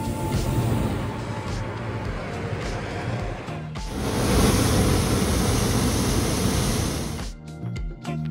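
Hot-air balloon propane burners firing: a loud, steady rushing noise from about four seconds in, lasting about three and a half seconds, after a softer rushing noise. Background music with a beat comes back near the end.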